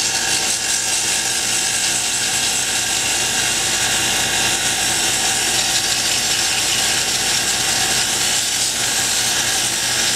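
Wood lathe running steadily with a bocote dart barrel spinning between centres, while sandpaper held against the turning wood rubs along it: the sanding stage of hand-turning the dart.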